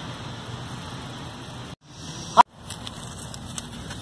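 Steady outdoor background hiss with no clear single source, cut off twice by brief silent gaps at edits about two seconds in, with a short rising sound just before the second gap.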